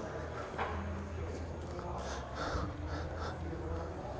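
Quiet gym room tone: a low steady hum with faint soft sounds scattered through it.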